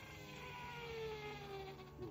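Electric fuel pump of a Rotax 915 iS engine whining after being switched on to pressurise the fuel system before engine start. The whine is faint and its pitch slides slowly downward.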